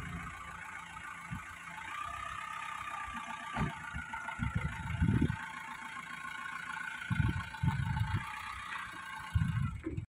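Mahindra Scorpio's diesel engine idling steadily, with several low gusts of wind buffeting the microphone about halfway through and near the end.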